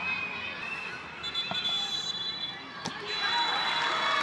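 Football ground ambience: voices shouting across the pitch, with a couple of dull knocks and a steady high tone that sounds twice. The crowd noise rises near the end.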